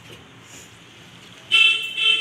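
Faint room sound, then a loud horn toot with a steady pitch starts suddenly about one and a half seconds in.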